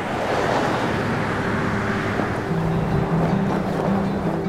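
A loud, steady rushing noise that swells in at the start and holds, with low music notes coming in about halfway through.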